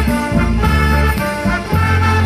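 School big band playing live: brass and saxophones in a swing feel, with a low bass line moving underneath.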